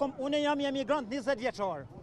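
Speech only: a man talking continuously.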